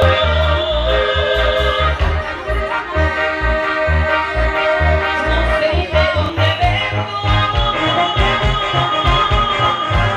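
A live dance band playing a ranchera: a sustained melody over a steady, regular bass beat.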